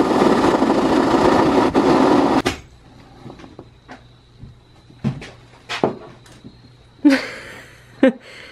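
A saw cutting through the last bit of a plywood dinghy hull for about two and a half seconds, then stopping abruptly as the cut finishes. A few light knocks follow as the pieces are handled.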